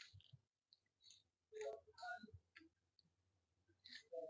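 Near silence with faint, scattered clicks and small handling noises.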